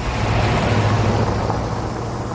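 Steady motor-vehicle running noise: an even hiss over a low, unbroken hum.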